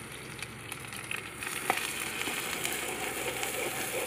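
Sliced onions frying in hot oil in a kadai over a wood fire: a steady sizzle, with a sharp click a little under two seconds in.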